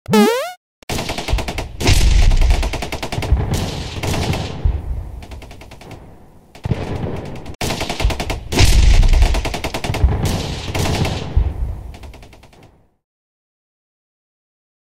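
Edited intro sound effect: a short rising-and-falling sweep, then a dense, rapid rattle of sharp cracks over deep booms, played twice, each run fading away, and cut to silence near the end.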